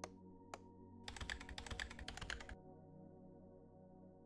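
Typing on a computer keyboard: two single clicks, then a quick run of keystrokes lasting about a second and a half.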